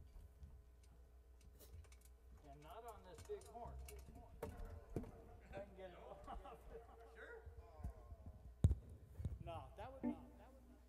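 Faint murmur of voices in the room with scattered clicks and knocks, the sharpest one near the end, as a saxophone is swapped and handled between songs.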